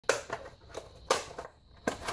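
Sharp plastic clicks and knocks from a Cube 3 PLA filament cartridge's clear plastic housing being gripped and twisted by hand, about six in two seconds.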